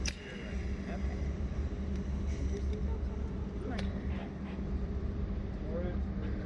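A steady low hum, with a sharp click at the start and another nearly four seconds in.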